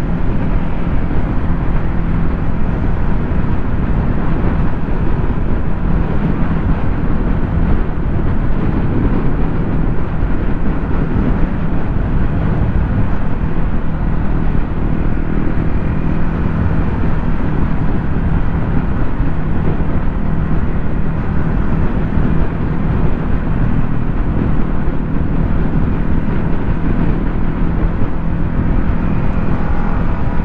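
Steady wind rushing over the microphone, with the low, even hum of a motor scooter's engine cruising at a constant speed.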